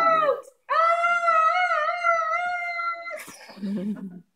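A woman's voice holding a high, slightly wavering 'ooh' for about two and a half seconds, the long drawn-out 'out' note of a children's counting song. It follows a brief break about half a second in, and a short lower voice comes in near the end.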